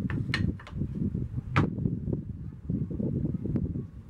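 A few sharp clicks and knocks as whetstones and small items are handled and set down on a wooden workbench, the loudest about a second and a half in, over a steady low rumble.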